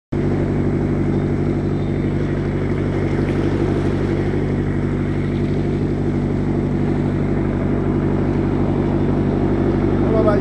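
The UC3 Nautilus submarine's engine running steadily as it cruises on the surface, a constant low drone.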